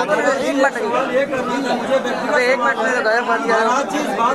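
Speech only: several people talking at once, overlapping voices in a room.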